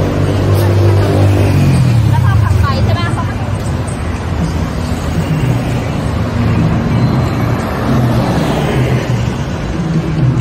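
Traffic on a busy city road: steady engine hum of passing cars and buses, heaviest in the first couple of seconds. Brief voices of passers-by come through about two to three seconds in.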